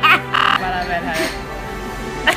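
A woman's wordless vocal noise, sliding in pitch, over background music of held notes.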